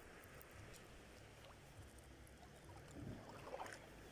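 Near silence: faint lapping of small sea waves at the shoreline, with a low rumble that swells a little near the end.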